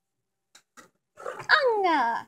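A child's voice making wordless, drawn-out calls that slide down in pitch, starting just over a second in after a pause.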